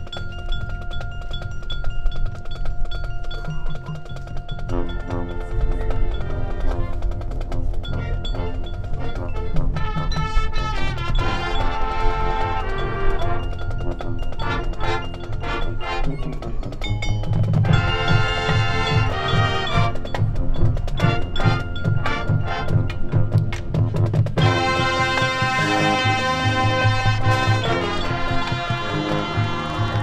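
High school marching band playing its field show: a lighter opening of sustained tones for the first few seconds, then the full band of brass and drums comes in, with loud swells in the second half.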